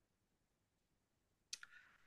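Near silence, broken near the end by one faint, brief click.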